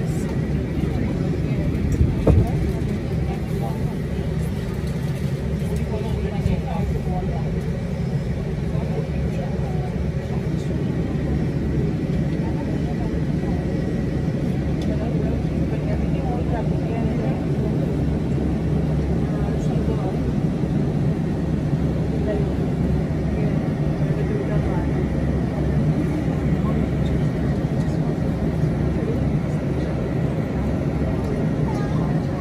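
Steady low engine rumble with a faint steady high whine, heard from behind glass, with indistinct voices in the background.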